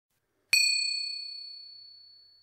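A single high, bell-like chime struck once about half a second in, ringing with several clear overtones and fading away smoothly over about two seconds.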